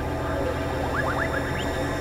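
Experimental electronic synthesizer music: a steady low drone with a quick run of short rising chirps about a second in.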